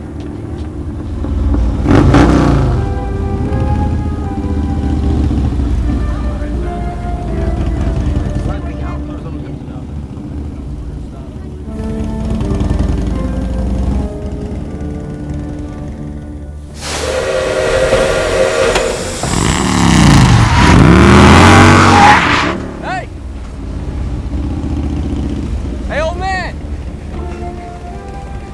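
Film soundtrack mix: music over the sounds of a steam train at a station and a motorcycle running alongside it. There is a loud surge of engine and steam noise with gliding pitches from about 17 to 22 seconds in.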